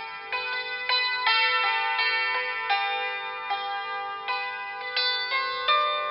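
Hammered dulcimer played with two hammers: a slow run of struck notes, each ringing on and overlapping the next.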